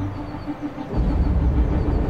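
A low rumble like a vehicle engine, starting about a second in, as a faint held music tone dies away.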